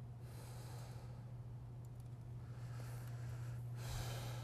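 A person breathing close to a live microphone: a few soft breaths, one near the start and two near the end, over a steady low electrical hum.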